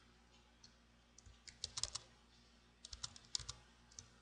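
Computer keyboard typing: two short runs of quiet keystrokes, one about a second and a half in and another around three seconds in.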